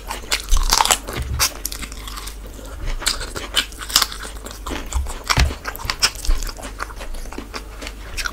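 Close-miked chewing and biting of chicken masala and khichuri eaten by hand: irregular wet smacks and sharp clicks from the mouth.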